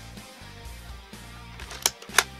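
Background music, with one sharp click near the end from a small spring-plunger foam-dart blaster being worked.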